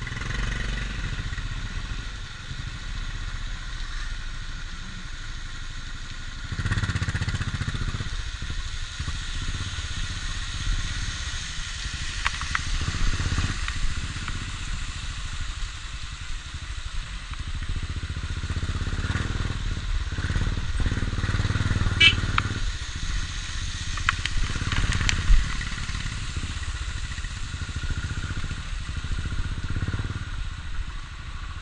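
Motorcycle engine running at low speed over a rough, rocky mountain track. It swells louder a few times, with a few sharp clicks and knocks from the bike and the stones.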